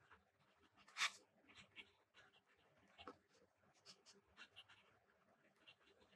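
Pen writing on a grid-paper journal page: faint, short scratching strokes with pauses, the loudest scratch about a second in.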